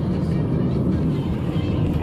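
Steady low rumble of a car in motion, road and engine noise heard from inside the cabin.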